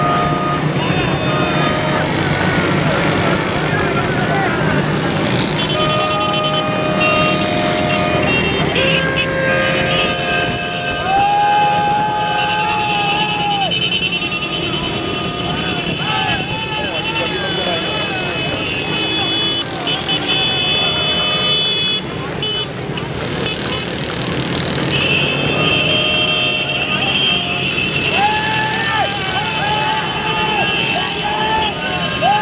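Many small motorcycles running together, with horns sounding in long held blasts that come and go and men's voices shouting over the engines.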